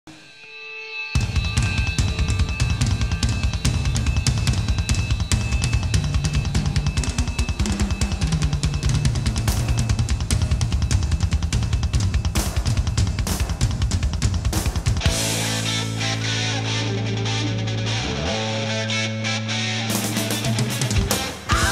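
Heavy metal band recording: a fast, busy drum kit with bass drum and cymbals comes in about a second in, over a moving bass line. About three-quarters of the way through it gives way to long held chords.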